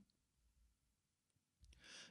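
Near silence in a pause of the narration, with a faint intake of breath near the end.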